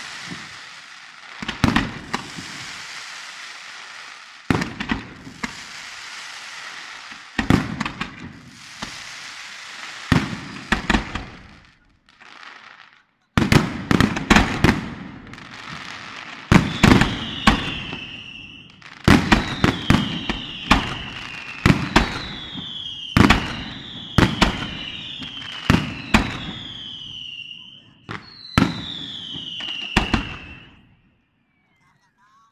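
Aerial fireworks display finale: clusters of loud shell bursts with crackling between them, briefly dropping off just before the halfway point. In the second half, nearly every burst is followed by a falling whistle about a second long.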